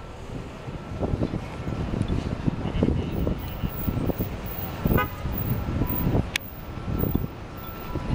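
City street traffic noise, with a brief car horn toot about five seconds in and a sharp click shortly after.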